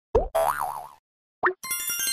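Cartoon sound effects: a quick rising boing, a wobbling, warbling tone lasting about half a second, then another short boing after a brief gap. A bright, ringing music jingle starts near the end.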